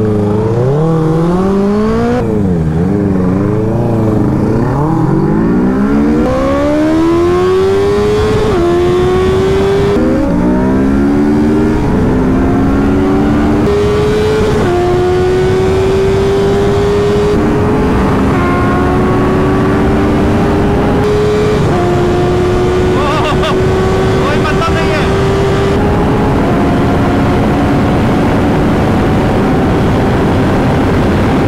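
Honda CBR650R inline-four with an Austin Racing slip-on exhaust: blipped at rolling speed for the first few seconds, then accelerating hard through the gears. Its pitch climbs steeply and drops back at each of about six upshifts, under rising wind noise.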